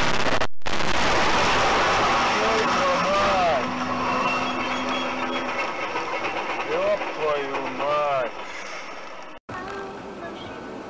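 Aftermath of a head-on collision with a semi truck, heard from inside the struck vehicle: a loud rush of crash noise for the first few seconds that dies away, then people crying out in a few short, rising-and-falling bursts.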